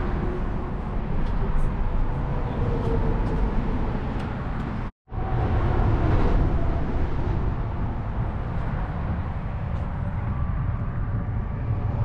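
Steady low rumble of freeway traffic on the overpass overhead, broken off briefly about five seconds in.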